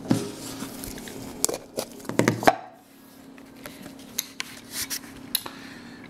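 Hard plastic shell of a Magic 8 Ball being opened by hand: a run of sharp clicks and knocks, loudest about two seconds in, as the halves are worked apart and set down on a wooden table, followed by a few softer taps.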